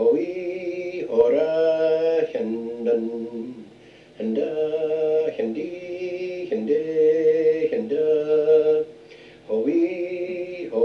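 A man singing a phrase of a piobaireachd ground in canntaireachd, the pipers' sung vocables, on a run of long and short notes. He breaks off briefly about four seconds in and again near the end.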